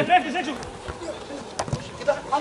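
Players' voices shouting on the pitch, then one sharp thud of a football being kicked a little past halfway.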